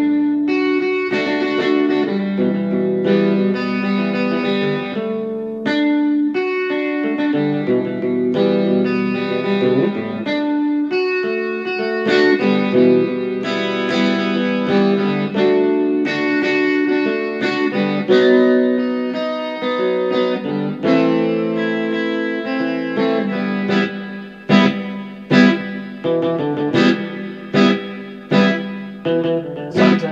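Electric guitar played through chorus and hall reverb effects, ringing out sustained chords and notes. From about three-quarters of the way in, it switches to short, separate chord stabs about one a second.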